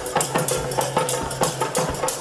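Dhol drumming in a fast, steady beat of about four to five strokes a second, over a held instrumental tone: live folk music.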